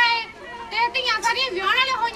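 A girl speaking into a microphone, with a short pause about half a second in before her voice resumes.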